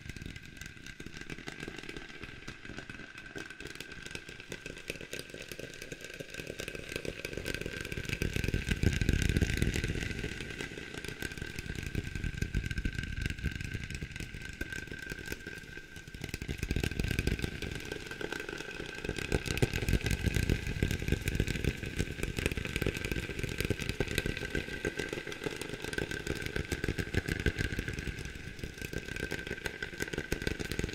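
Fast fingertip tapping processed with heavy echo and reverb, blurring into a dense, continuous rattle. It swells louder about a third of the way in and again past the middle, over a steady high ring.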